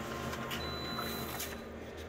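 Office multifunction copier running with a steady hum; a faint high-pitched whine comes in for about a second midway.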